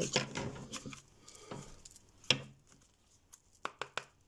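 A deck of tarot cards being handled and shuffled by hand: a few soft, separate clicks and taps of the cards, the sharpest about two seconds in and a quick cluster near the end.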